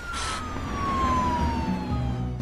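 A single siren-like tone that glides slowly and evenly downward in pitch, over a low steady sound underneath.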